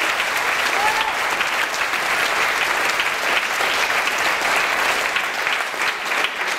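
Audience applauding steadily, a dense continuous clapping that eases slightly near the end.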